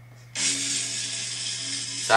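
A roulette-wheel phone app's spinning sound effect, a rapid ratchet-like ticking that starts suddenly about a third of a second in and runs on steadily as the wheel turns.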